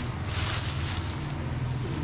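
Thin plastic sheeting rustling as a hand moves it, over a steady low hum.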